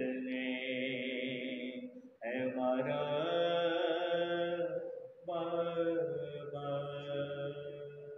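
A man's solo voice chanting a nauha, an Urdu Shia lament, unaccompanied, in three long drawn-out phrases. There are brief breaths about two and five seconds in, and the last phrase trails off near the end.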